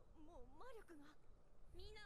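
Faint anime character dialogue played back quietly, a single voice whose pitch swoops up and down.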